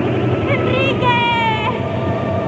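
A girl's wordless, strained cries, one held on a fairly steady pitch from about half a second to nearly two seconds in, over a low steady hum.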